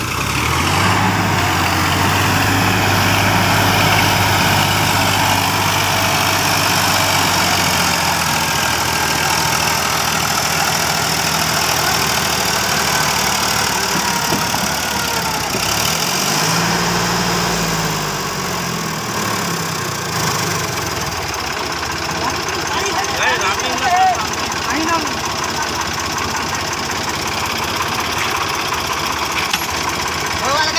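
Sonalika DI-50 tractor's diesel engine running steadily. About 16 seconds in it revs up and falls back.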